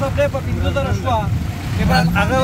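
Auto rickshaw engine running with a steady low rumble heard from inside the passenger cabin, with voices talking over it.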